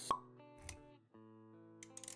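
Intro-animation sound effects over soft background music: a sharp pop just after the start, a short low thump a moment later, then held music notes with a few light ticks near the end.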